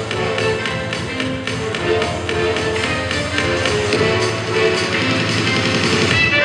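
Dance music with a steady beat, played loud and continuous for a stage dance routine.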